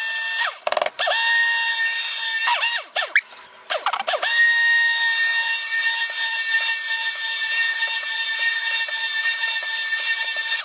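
Stick blender motor whining at high speed as it mixes cold-process soap batter, which is thickening toward trace. It stops twice in the first four seconds, its pitch sliding down as it spins down and back up as it restarts, then runs steadily.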